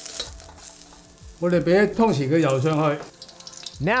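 Stir-fried vegetables sizzling in a hot wok as a spatula scoops them out. A man's voice speaks briefly in the middle, louder than the sizzle, and speech starts again near the end.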